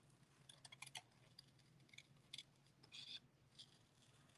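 Small scissors snipping paper, cutting closely around a stamped pumpkin shape: a string of faint, irregular snips.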